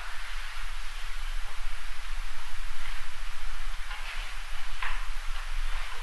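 Room tone of a lecture hall recording: a steady hiss with a low hum underneath, and a couple of faint brief sounds about four and five seconds in.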